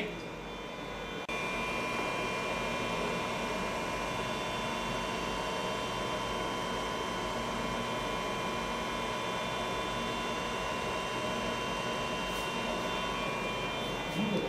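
Steady hum and whine of running lab electronics and cooling fans, with a thin high tone and several fainter ones over an even rush of noise; it steps up in level suddenly about a second in.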